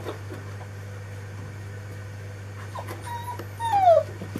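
Four-week-old Anglo Wulfdog puppy whining: a short high whine about three seconds in, then a louder whine that falls in pitch near the end.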